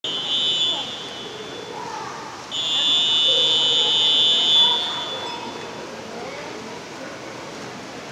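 A referee's whistle blown twice: a short blast, then a long steady blast of about two seconds. The long whistle is the signal calling swimmers to step up onto the starting blocks.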